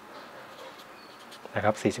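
Faint scratching of a marker pen writing a number on paper, then a man's voice briefly near the end.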